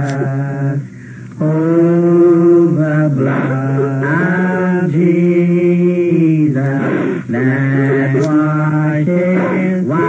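Voices chanting slow, drawn-out phrases on long held notes that step from pitch to pitch, with a short break about a second in.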